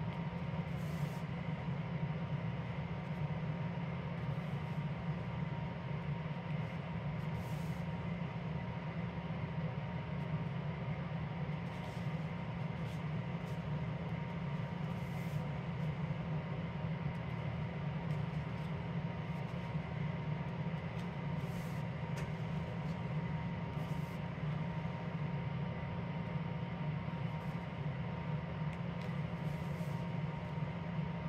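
Steady low background hum with a faint high whine running throughout, with a short soft rustle every few seconds as paperback coloring-book pages are turned.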